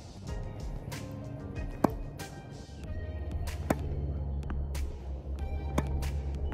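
Background music with a steady beat, over three sharp hits of a tennis racket's strings brushing up on a tossed ball, about two seconds apart.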